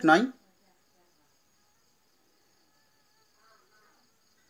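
Near silence with a faint, steady, high-pitched chirring of crickets in the background.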